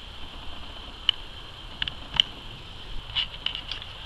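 A steady, high-pitched outdoor insect drone, with a few small clicks and taps of tool handling scattered through it, the sharpest about a second in and about two seconds in.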